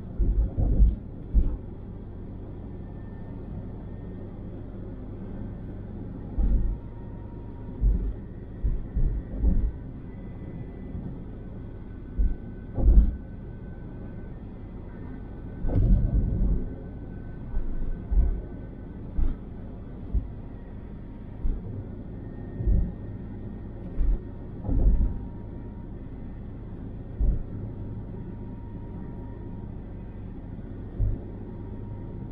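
Car driving at highway speed, heard from inside the cabin: a steady low road-and-engine hum, broken by irregular low rumbling thumps a second or a few seconds apart.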